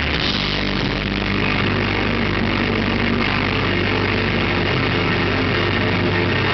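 Rock band playing live through a PA, loud and instrumental: a wall of distorted guitar over a held low bass note that comes in just after the start.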